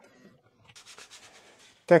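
A quick run of soft rubbing strokes, about ten a second: a cloth wiping a textured PEI build plate clean with isopropyl alcohol.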